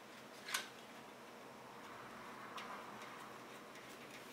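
Sharp click about half a second in, then a fainter click and light scraping, as a metal PCIe slot cover is fitted into the rear of a PC case.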